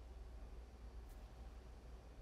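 Near silence: a low steady hum under faint background hiss, with one faint tick about a second in.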